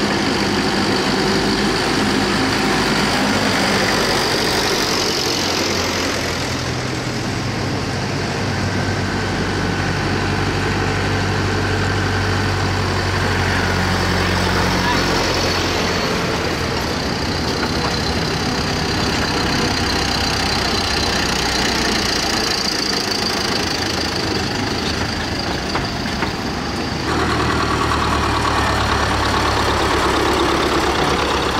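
Vintage farm tractors driving past one after another, their engines running with a low, steady note that grows and fades as each one passes.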